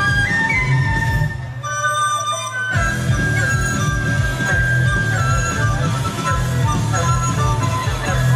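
Instrumental music led by flutes and an erhu playing a melody over bass and drums. The bass and drums drop out for about a second while a held melody note carries on, then come back in.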